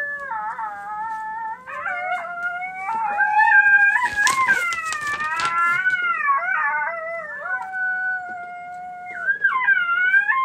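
Lucky Duck Super Revolt e-caller playing a recorded coyote howling call through its horn speaker: long, wavering howls that rise and fall, several voices overlapping with a harsher, noisier stretch around the middle.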